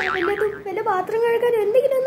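A girl's voice speaking in a high, sing-song pitch, wavering quickly up and down at the start.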